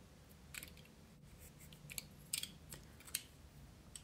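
Utility-knife blade scraping and shaving hardened glue off a small balsa-and-foam model-plane nose block: a series of short, faint scrapes and clicks.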